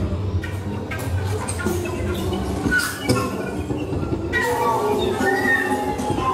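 Live experimental electro-acoustic ensemble improvising: a dense rumbling, clattering texture from electric bowed and plucked instruments and laptop electronics, with scattered clicks. About four seconds in, thin wavering high tones come in over it.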